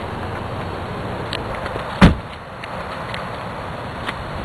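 A single sharp thump about two seconds in, over a steady background hiss.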